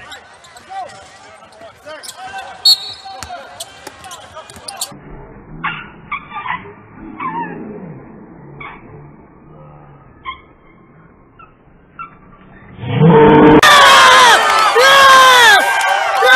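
Indoor basketball game on a hardwood court: scattered voices, ball bounces and short sneaker squeaks. About thirteen seconds in, loud cheering and shouting suddenly break out as a shot goes in.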